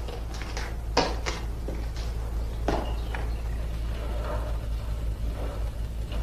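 Steady low hum of an old film soundtrack, with a few sharp knocks about a second in and again near three seconds.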